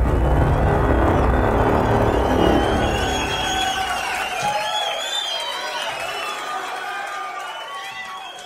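End of a produced music intro: a deep bass rumble dies away over the first four seconds. A cheering crowd sound effect with high wavering calls carries on over it and fades out.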